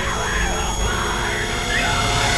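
Shouted, yelling voices over steady background music.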